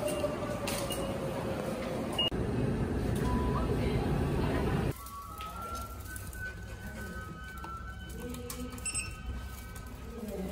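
Busy train-station crowd noise, with voices, around the ticket gates. It stops abruptly about five seconds in. A quieter stretch follows, with faint high tones stepping in pitch like a simple tune.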